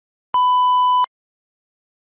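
A single steady electronic beep, under a second long, that starts and stops abruptly.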